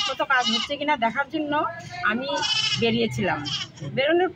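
A woman speaking Bengali, talking continuously.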